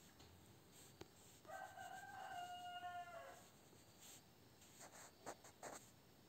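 A faint animal call: one drawn-out pitched cry lasting almost two seconds, dropping in pitch at its end. A few soft taps follow near the end.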